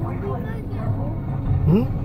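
Indistinct voices with some background music, heard inside a car's cabin over a low rumble.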